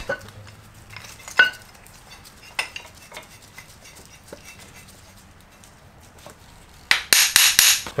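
Scattered metal clinks and knocks as a steel ball joint press and its cups are handled and lined up on the U-joint bearing caps of a front axle shaft, with a louder burst of metal clatter near the end.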